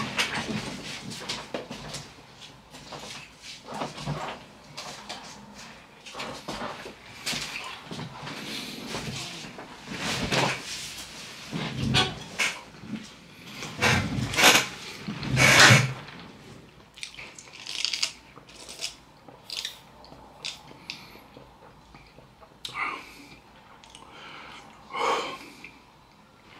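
Handling noises as a fast-food soda cup with a straw is fetched and handled: irregular rustles, knocks and clicks, busiest in the middle and sparser towards the end.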